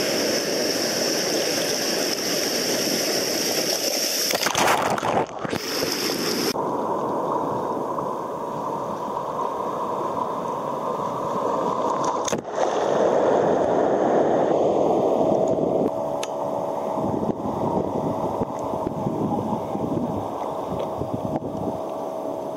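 Sea water sloshing and gurgling around a camera held at the surface in the surf, the sound changing abruptly a few times as waves wash over it. A wave breaks against the camera about twelve seconds in.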